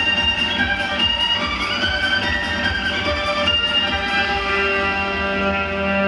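Electric violin trio playing a sustained melody together over a backing track with a steady beat.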